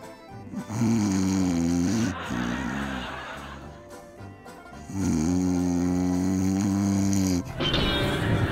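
Exaggerated comic snoring by a performer's voice: two long, drawn-out snores, the second starting about five seconds in, with a softer breath between them.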